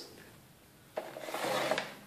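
Scoring blade of a paper trimmer drawn along its rail, pressing a score line into a sheet of patterned paper: one rasping scrape that starts suddenly about a second in and lasts about a second.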